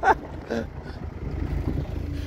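Steady low rumble of the off-road Polonez 4x4 running slowly along a gravel track, heard from outside the moving car.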